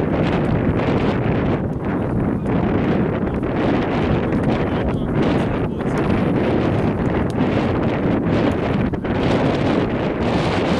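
Steady wind noise buffeting the microphone, a dense rush strongest in the low range with no let-up.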